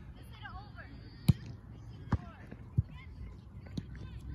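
Sharp slaps of a volleyball being struck by hand, three times in quick succession, the first and loudest just over a second in, with faint voices in the background.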